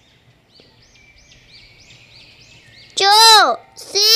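Faint bird chirping: short chirps repeated about three to four times a second. About three seconds in, a child's voice loudly reads out a single syllable.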